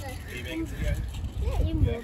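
Faint, high-pitched voices in the background, likely children's, over a steady low rumble.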